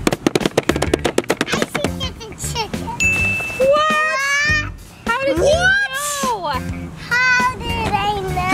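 A zipper pulled open on a fabric tote bag: a quick run of clicks over the first two seconds. A ding follows about three seconds in, then high excited voices over background music.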